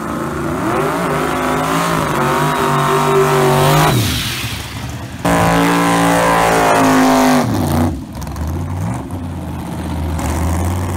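Drag-racing car engine revving hard. The pitch climbs over about three seconds and drops about four seconds in. After a sudden jump it holds high revs for about two seconds, falls away about eight seconds in, then climbs again.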